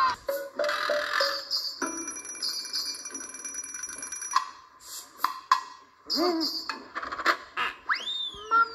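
Show soundtrack of music and electronic sound effects: held high beeping tones in the first half, then scattered sharp clicks and hits, with a doll-like voice crying "Mama!" near the end.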